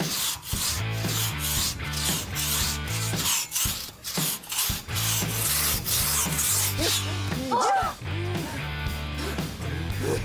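Two-person crosscut saw cutting through a log, rasping in quick back-and-forth strokes that stop about seven seconds in, with background music underneath.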